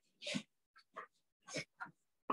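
A person moving about in a room: about five short, separate sounds roughly half a second apart, each cut off abruptly.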